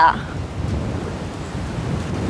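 Wind buffeting the microphone outdoors: a steady, fluttering low rumble.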